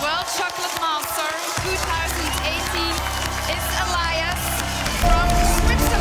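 Audience cheering and clapping over loud celebratory music as a competition winner is announced. The music's bass comes in stronger about five seconds in.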